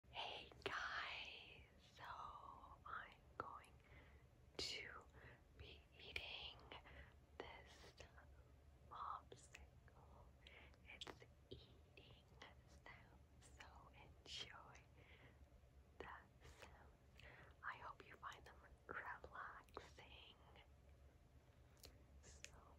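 A woman whispering softly into a close microphone, in short breathy phrases with small clicks between them.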